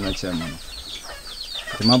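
Birds chirping outdoors: a quick run of short, falling chirps between a man's lines of speech.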